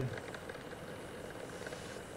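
Faint, steady background hiss and hum between the talkers' remarks, the room and line noise heard through a webcam video call's audio.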